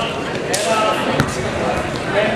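Voices of spectators and coaches shouting in a reverberant gym, with two sharp knocks, about half a second and a little over a second in.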